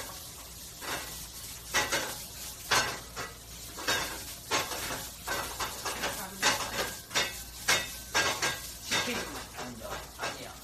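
Food sizzling in a metal frying pan on the stove while a utensil scrapes and clanks against the pan in repeated, irregular strokes, about one or two a second.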